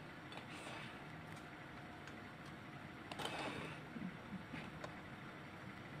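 Faint handling sounds of a silicone spatula spreading soft mascarpone pastry cream over ladyfingers, with a few light ticks over low room noise.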